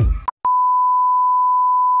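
The last moment of the outro music cuts off, and after a brief silence a single steady electronic beep tone starts and holds unbroken, loud and at one pitch, like a test tone.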